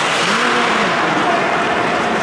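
Steady noisy rush of a bandy game on ice, with one short shouted call about half a second in.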